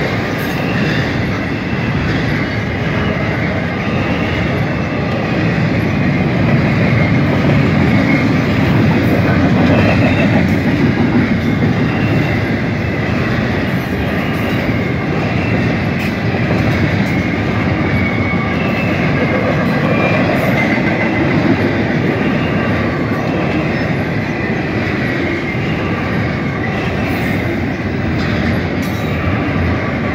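Double-stack intermodal freight cars rolling past at a grade crossing: the loud, steady noise of steel wheels on rail.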